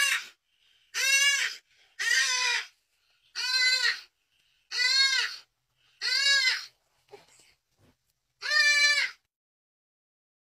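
Young leopard calling: seven short cries, about one a second with a longer gap before the last. Each cry rises and then falls in pitch.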